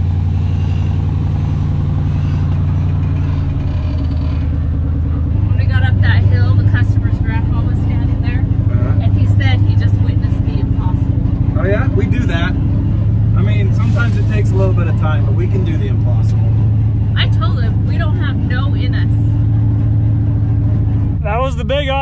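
Heavy off-road wrecker truck's engine heard from inside the cab, running hard and steady as it climbs out, its note shifting up about five seconds in and again past the middle. Muffled talk and laughter over it.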